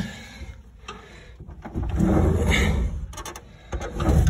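Handling noise from a handheld phone being moved about: one loud rubbing scrape of a little over a second near the middle, followed by a few light clicks.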